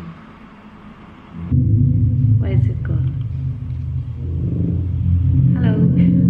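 A loud, low, steady electronic drone with several held pitches comes in suddenly about a second and a half in from the amplified sound rig of mixer, effect pedals and speaker, over a faint hum before it.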